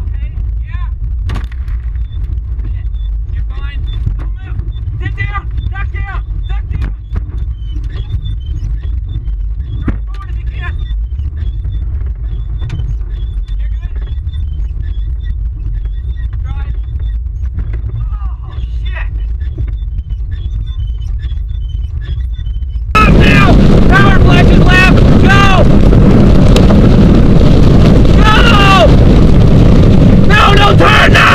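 Inside a car caught in a tornado, a steady low rumble of wind against the cabin, with sharp knocks of debris striking the body and the cracked windshield. About 23 seconds in, the sound turns suddenly far louder and distorted: a roar of wind with men shouting over it.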